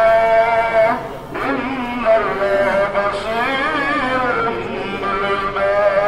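A voice chanting a devotional song in long, drawn-out phrases, breaking off briefly about a second in.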